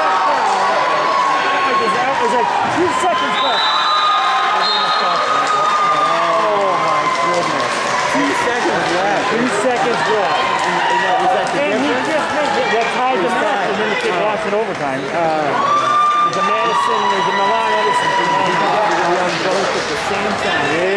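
Spectators in a gymnasium: many overlapping voices talking and calling out, with drawn-out shouts about three seconds in and again around sixteen seconds.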